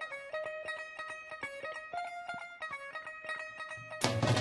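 Guitar playing a twangy melody alone, a quick run of single picked notes with no drums, as the opening of a bhangra number.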